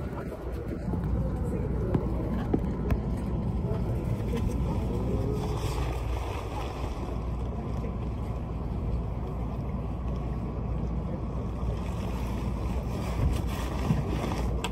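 Electric limited express train running, a steady low rumble with a motor whine that glides in pitch about four to six seconds in.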